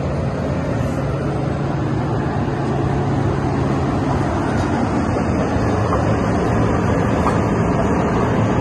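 Case CX330 excavator's diesel engine running at idle: a steady low hum that turns rougher and a little louder about halfway through.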